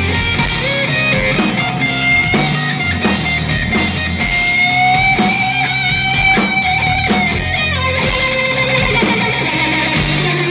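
Live instrumental psychedelic stoner rock: electric guitar over bass and drums with continual cymbal strikes. The guitar holds one long note, slightly bent, from about four seconds in to about seven and a half seconds in.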